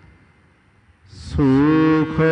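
A short pause of near silence, then an intake of breath about a second in and a man's voice beginning a long held chanted note: the melodic recitation of a Sikh hymn (Gurbani).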